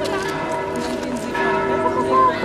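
Church bells ringing, a dense layer of sustained overlapping tones.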